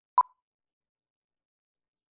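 A single very short, pitched blip, a sound effect in the advert's soundtrack.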